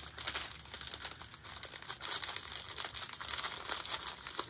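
Plastic bag of diamond-painting drills crinkling and rustling in the hands, a steady run of small crackles, as fingers work to find the bag's opening.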